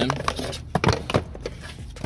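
A few short knocks and rustles from hands pushing the amplifier power wire under the floor carpet and plastic trim, the loudest knocks near the middle.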